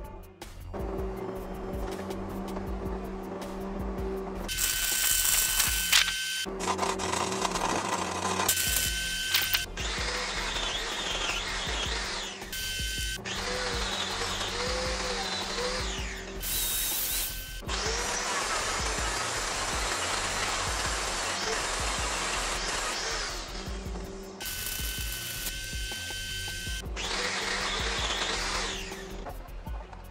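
Background music with a steady beat, over which an angle grinder grinds steel in a series of bursts of a few seconds each, the longest about seven seconds, each cutting in and out sharply.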